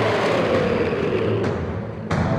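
Film sound effect of a giant serpent monster roaring: a long, rumbling roar that falls slowly in pitch, mixed with a noisy blast, and cut off sharply at the end.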